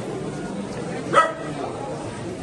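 Murmur of people talking, broken about a second in by one short, high-pitched cry, the loudest sound here.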